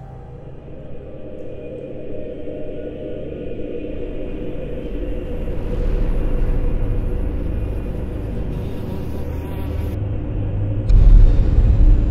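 Horror-film score: a low rumbling drone with held tones that slowly swells. About eleven seconds in, a sudden loud low boom hits.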